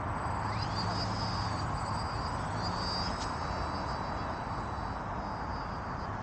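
Small RC model plane's electric motor and propeller rising to a high whine about half a second in as it throttles up for the hand launch, then holding a steady high whine as the plane flies off.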